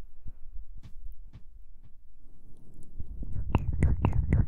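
Close-microphone ASMR sounds: soft scattered clicks and light taps, then about three seconds in a quick run of louder crackling strokes with a low rumble, like hands or breath working right at the microphone. A faint whisper may be mixed in.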